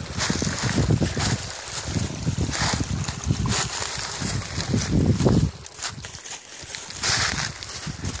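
Footsteps crunching through dry fallen leaves at an uneven pace, with low wind buffeting on the microphone.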